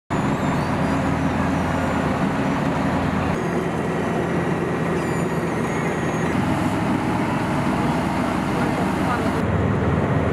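Heavy road-paving machinery running: the diesel engine of a tracked asphalt paver laying asphalt, a steady low drone. The sound changes abruptly a few times, and a road roller is working near the end.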